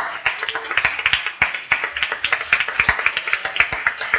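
Small audience applauding, many hand claps overlapping at an even pace.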